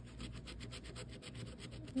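A coin scraping the coating off a scratch-off lottery ticket in rapid, even back-and-forth strokes.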